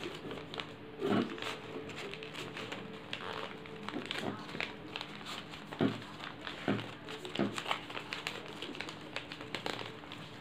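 Folded origami paper rustling and crinkling as the modules of a transforming paper ninja star are pushed and squeezed by hand, in irregular crackles with a few sharper ones, over a faint steady hum.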